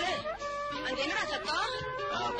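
A wavering cry whose pitch slides up and down several times, over sustained background music.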